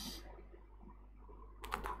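Faint tapping of computer keys, with a short run of keystrokes near the end, in a quiet room.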